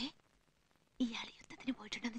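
A woman whispering into another woman's ear, starting about a second in after a short silence.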